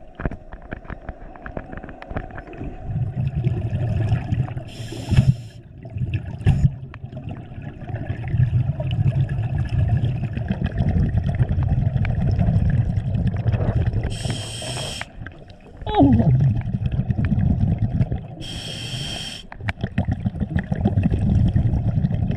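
Scuba diver breathing through a regulator underwater: three short hissing inhales, about 5, 14 and 19 seconds in, with long low bubbling exhales between them.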